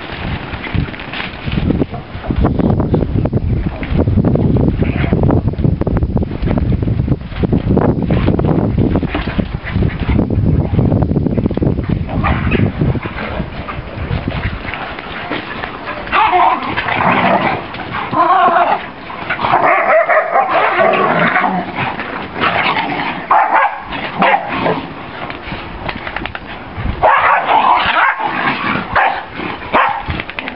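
Bull lurchers and a Patterdale terrier in rough play, giving repeated bursts of yips and barks from about halfway through and again near the end. A low rumbling noise runs under the first half.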